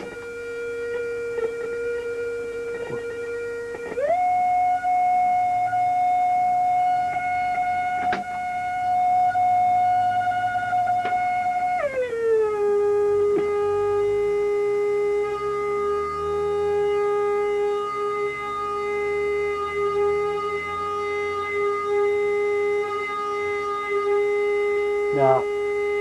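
Audio tone from an Eico tone generator played through a guitar phase-shifter effect, its level slowly swelling and fading. The pitch steps up about four seconds in, then slides down to a lower steady note about twelve seconds in.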